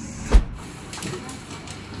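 A single dull thump with a deep low end about a third of a second in, then steady shop room noise with a few faint clicks.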